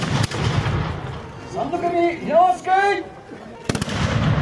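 Japanese matchlock muskets (tanegashima) firing in a volley: a sharp report right at the start with a long low rumble trailing after it, then two reports almost together near the end. Between the shots, about halfway through, a man's voice shouts.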